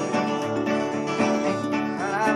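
Acoustic guitar playing a steady strummed folk accompaniment, with no voice over it.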